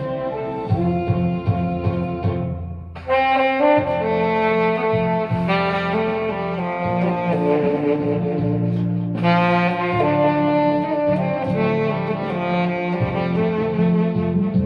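Tenor saxophone playing a melody of long held notes over a backing accompaniment with a steady bass line; the melody drops out briefly about three seconds in.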